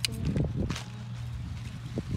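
Shears cutting green onions being trimmed into bunches: a sharp snip at the start and a softer cut a little later, with rustling of the onion stalks over a steady low hum.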